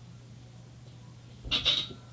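A child landing a flip on a bed: about one and a half seconds in, a thud as he lands, with a short high-pitched squeal.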